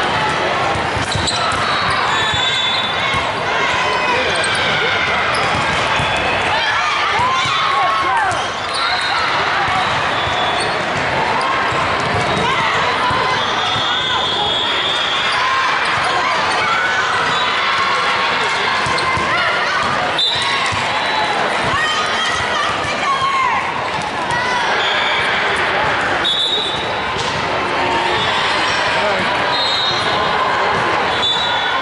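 Din of an indoor volleyball game in a large gym: many players and spectators calling out over one another, with short high sneaker squeaks on the hardwood court and the knocks of the ball being played, one sharp knock about twenty seconds in.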